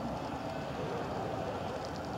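Steady outdoor background noise: a low, even rumble with faint distant talking.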